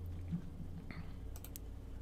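A few sharp computer mouse clicks over a low, steady hum.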